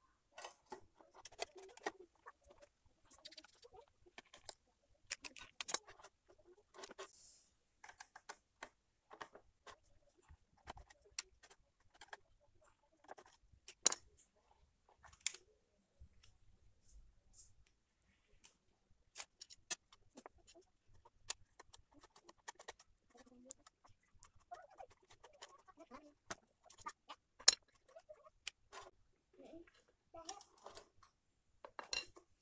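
Scattered faint clicks and knocks of hard plastic housing parts and small screws being handled as an electric clothes iron is taken apart by hand, with a few sharper clicks among them.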